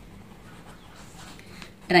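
A pen writing by hand on paper: a faint, steady scratching as a few words are written. Speech begins right at the end.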